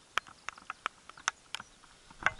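A rapid, irregular run of sharp clicks and taps close to the microphone, about eight to ten in two seconds, some louder than others.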